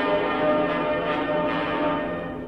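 Piano and orchestra playing loud, sustained chords in a piano concerto recording.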